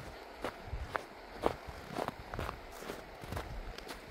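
Footsteps crunching on packed snow at a steady walking pace, about two steps a second, over a faint steady hiss.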